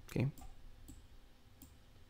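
A few faint, sharp clicks from a computer mouse, spaced out over a couple of seconds.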